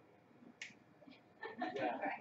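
A lull with a single short, sharp click about half a second in, then voices in the room picking up near the end.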